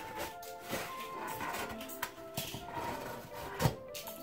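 Soft background music with steady held notes, over a few light knocks and a single dull thump about three and a half seconds in, as a loaf of bread is slid off a metal baking tray onto a wooden board.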